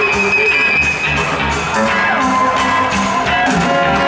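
Live rock band playing an instrumental stretch, with electric bass and percussion under held high notes.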